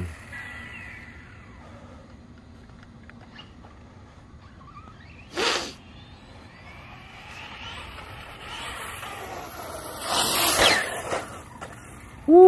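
Team Redcat BE6S 1/8-scale electric RC truck running at a distance, its motor and tyres faint at first, then louder about ten seconds in as it comes close and brakes hard into an endo, with the motor's whine gliding in pitch. A short loud rush of noise about five and a half seconds in.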